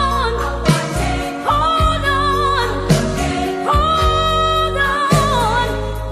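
Old-school gospel song: a singer holds wavering notes over a steady bass line and a regular drum beat.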